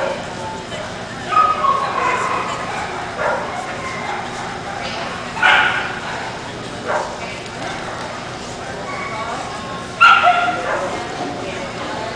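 Dogs barking and yipping in a large hall: about five short, sharp barks, the loudest about ten seconds in, over steady crowd chatter.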